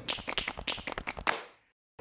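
A quick run of sharp taps, about ten a second, that fades out about a second and a half in and gives way to dead silence.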